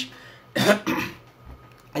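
A man clears his throat with a short, cough-like sound about half a second in.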